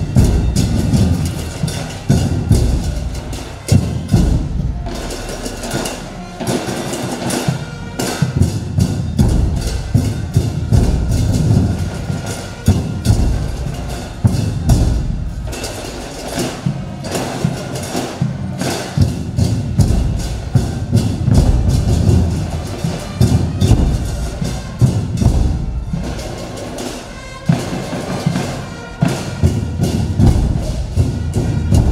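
Drum and percussion music with a steady, dense beat of sharp strikes and deep drum hits.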